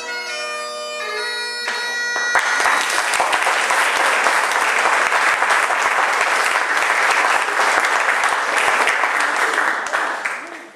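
Bagpipes play the end of a tune, the drones and chanter cutting off about two seconds in. Audience applause follows and carries on until speech takes over.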